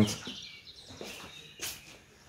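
A quiet pause with faint bird chirps in the background and a brief scuff or rustle a little before the end.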